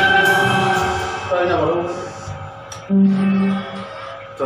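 Amplified band music stopping: the last chord rings out and fades over the first second and a half. About three seconds in, a single low note is plucked and held briefly.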